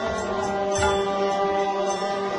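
Harinam sankirtan devotional music: a group chanting with khol drums played over steady held tones, with occasional drum strokes.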